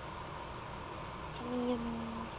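A person humming a low, steady 'mmm' note that starts about one and a half seconds in and runs on past the end, over a steady background hiss.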